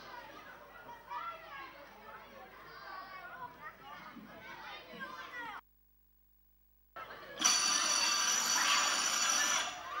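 Faint background voices, then the sound cuts out completely for over a second, then a loud electric bell rings steadily for about two seconds near the end.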